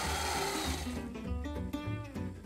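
Sewing machine running, stopping about halfway through, over background music.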